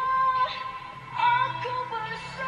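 A singer's high voice holding long sung notes over band accompaniment in a Malay song. One held note ends about half a second in, and a new phrase begins a little after the first second.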